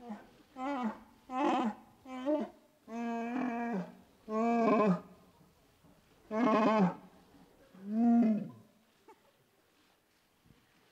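Chewbacca's Wookiee growls and roars: a run of about seven separate calls that bend in pitch, the longest about a second, stopping a little over a second before the end.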